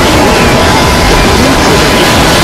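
A loud, constant, distorted jumble of many soundtracks played on top of one another: music and voices blurred into a steady noisy wash.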